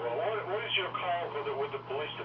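Speech only: a voice talking over the telephone, thin-sounding, with a steady low hum underneath.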